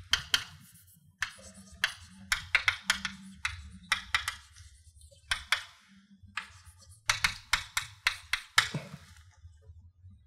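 Chalk writing on a blackboard: quick clusters of sharp taps and short scrapes as letters are written, with brief pauses between words, over a low steady hum.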